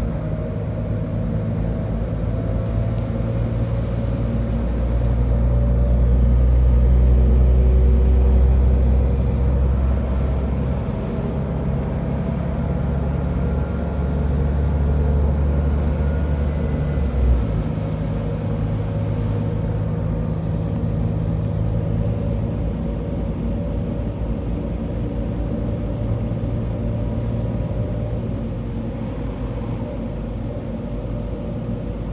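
Passenger train running, heard from inside the carriage: a steady low rumble of the train in motion, loudest about six to nine seconds in, with a single knock at about seventeen seconds.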